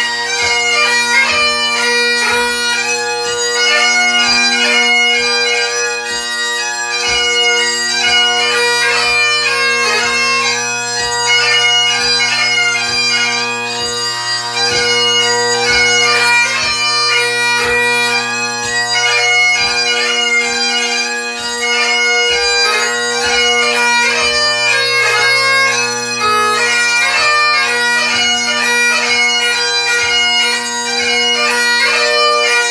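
Great Highland bagpipe played solo: a 2/4 march melody on the chanter over steady, unbroken drones.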